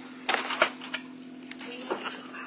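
Plastic food container of chopped onions being handled: a quick cluster of sharp clicks and taps about a third of a second in, then a few lighter ones.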